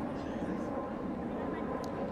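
Steady open-air ambience at a rugby ground: an even wash of background noise with faint distant voices.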